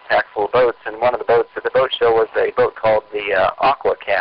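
Speech only: a man talking steadily, with no other sound standing out.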